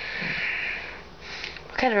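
A woman's audible sniff or breath through the nose lasting about a second, followed by a shorter breath just before she speaks again.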